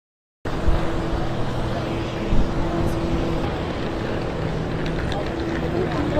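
Steady engine and running noise inside a passenger vehicle cabin, with a constant low hum. It starts abruptly about half a second in.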